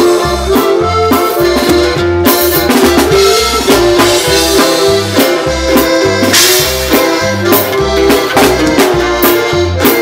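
Live band music with a steady beat: bass notes and drums keep time under a melody line, with regular cymbal hits.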